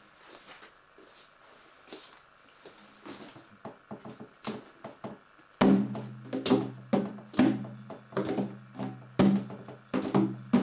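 A large hand-held frame drum. First come soft handling clicks and rustles. About halfway through, a steady beat of loud struck strokes begins, about two a second, each leaving a low ring.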